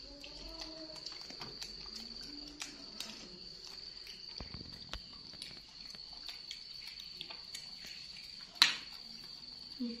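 Spoons clicking and scraping against porridge bowls while eating, with a sharper clink near the end. A steady high-pitched whine runs underneath throughout.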